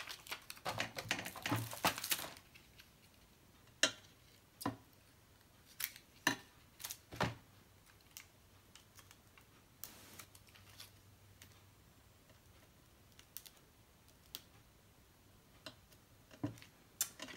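Light clicks and taps of small craft pieces being handled on a cutting mat: a quick run of clicks in the first two seconds, then single clicks every second or so.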